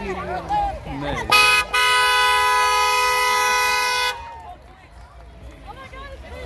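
Car horn: a short toot, then one long honk of about two and a half seconds, two pitches sounding together.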